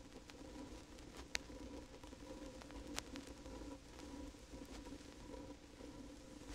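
Faint background hum and hiss of an old recording, with a thin steady tone and a few soft clicks, the clearest about a second and a half in and again about three seconds in.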